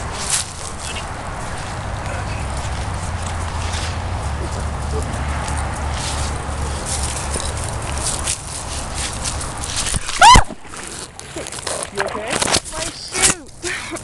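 Rustling of dry leaves and a low rumble on the microphone while walking on a creek bank, then a short, very loud high yelp about ten seconds in as the person filming falls, followed by laughing and scuffling in the leaves.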